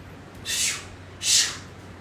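A woman's two short, forceful breaths blown out through the mouth, about three quarters of a second apart, breathy with no voice in them.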